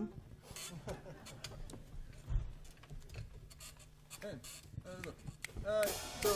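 A quiet pause between songs in a concert hall: faint voices and scattered small clicks and rustles, with the voices growing slightly louder near the end.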